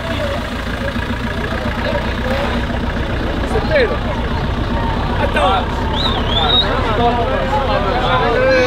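An off-road 4x4's engine running steadily at low revs as the vehicle crawls slowly through soft dirt, with a crowd's voices and shouts over it.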